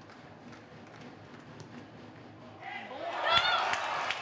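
Faint crowd ambience at a football ground. About three seconds in it swells into crowd noise with a shout as a free kick is struck toward goal.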